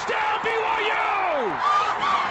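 Radio play-by-play announcers yelling excitedly at a high pitch over a cheering stadium crowd as a long run is called, with one long falling yell about a second in.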